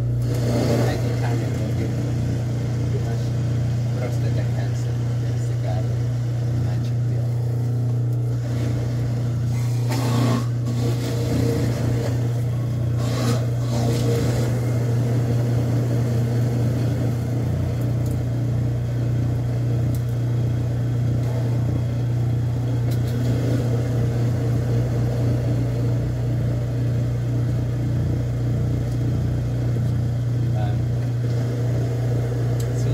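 Electric horizontal slow (masticating) juicer running, its motor giving a steady low hum while produce is pressed down its feed chute, with a couple of brief louder noises about ten and thirteen seconds in.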